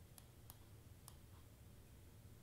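Near silence with a few faint, short computer mouse clicks as a piece is dragged on screen.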